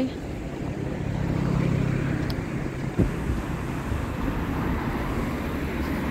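City street traffic: motor vehicles driving past, one passing close and swelling then fading in the first half, with wind buffeting the microphone. A single short knock about halfway through.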